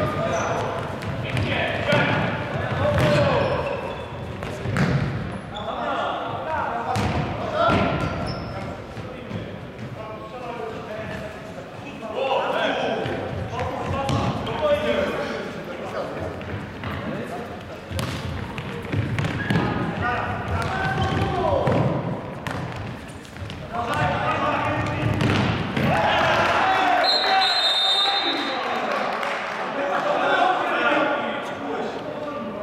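A futsal ball being kicked and bouncing on a wooden sports-hall floor, sharp irregular impacts that ring in the large hall, under voices talking and calling throughout.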